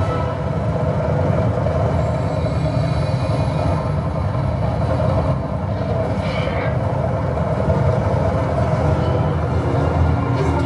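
Action-film soundtrack playing from a DVD on the head unit: a loud, steady low rumble of action sound effects.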